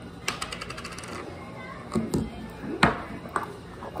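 Plastic lid of a jar of styling gel being twisted, a quick run of about a dozen clicks in the first second, followed by a few separate knocks.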